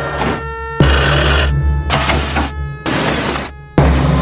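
Loud sugar mill machinery noise, crane and chain-conveyor running, in short segments that start and stop abruptly about once a second, some with a steady low hum underneath.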